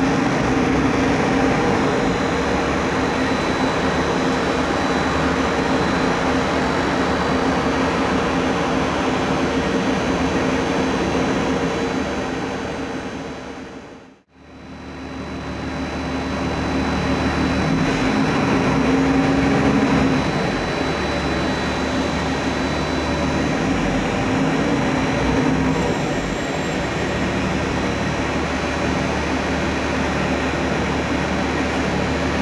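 Mercedes-Benz O500-U city bus's OM 926 LA inline-six diesel engine running steadily under way. The sound fades out to silence about halfway through and fades back in. A few seconds later it builds louder for a moment, then drops back.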